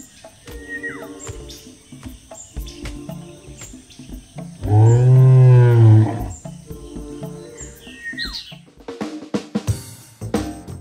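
Cartoon triceratops roar sound effect: one loud, low call about five seconds in, rising and then falling in pitch. It sounds over light background music with a drum beat, and short high bird chirps come near the start and near the end.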